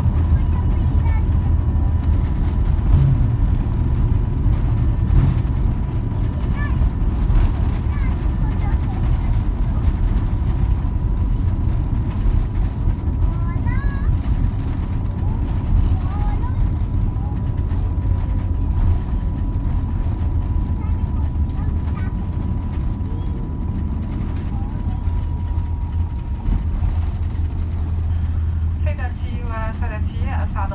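Airliner cabin noise on the ground after touchdown: a steady low rumble of the engines and the wheels rolling on the runway, with a thin steady whine over it that stops a few seconds before the end. A voice begins on the cabin speakers just before the end.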